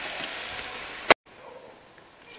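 Minced meat sizzling in a frying pan, a steady hiss that ends abruptly with a sharp click about halfway through, followed by a quiet room hush.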